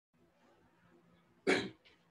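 Near silence, then a man's single short cough about one and a half seconds in.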